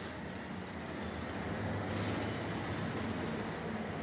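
Steady background rumble and hiss of an indoor room, with a faint low hum throughout.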